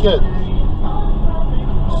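Steady low rumble of a car driving along at speed, heard from inside the cabin: engine and tyre noise.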